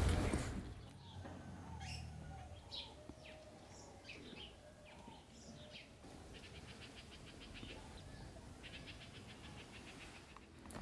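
Faint songbird calls: scattered short, high chirps, then two rapid trills of about a second each near the end.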